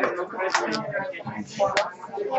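Indistinct talking by people close by, with no clear words.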